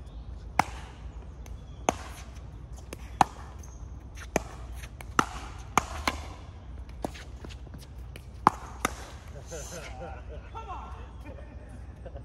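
Pickleball rally: paddles hitting the hollow plastic ball, about ten sharp pops roughly a second apart, with two quick ones close together near the middle and again later. The rally ends a few seconds before the end.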